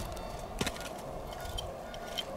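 A few light clicks and knocks, the sharpest about half a second in, from a stick and loose clods at the mouth of an earthen clay oven as it is dug open.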